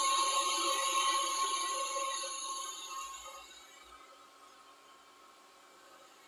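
Handheld hair dryer blowing steadily with a thin whine, drying the tinted lace at the nape of a glued-down wig. About three seconds in it dies away over a second or so, as if switched off and spinning down.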